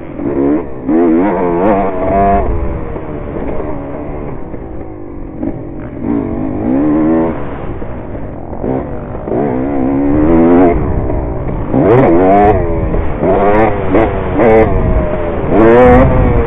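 Dirt bike engine revving hard and easing off again and again as it is ridden around a dirt track, the pitch climbing with each throttle-up and dropping back.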